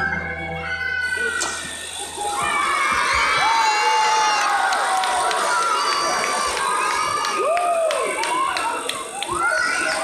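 The band's closing music dies away over the first two seconds or so. Then a crowd of young children shouts and cheers, many high voices at once.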